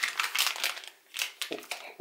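Shiny metallised anti-static bag crinkling as it is grabbed and lifted off the table, a quick run of crisp crackles lasting about a second and a half.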